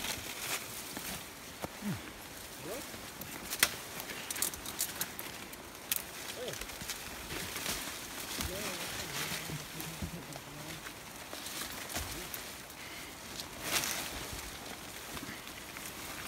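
Leaves, twigs and brush rustling and snapping as someone pushes and steps down through dense undergrowth, with scattered sharp cracks. Faint voices can be heard in the background.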